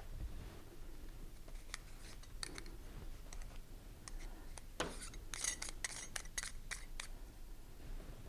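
Faint light clicks and scraping of a Voigtländer Nokton 40 mm camera lens being handled as a lens cap is fitted to its front, with a quick run of clicks in the second half.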